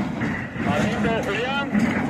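People's voices talking or calling out over steady background noise, with no words clear enough to make out.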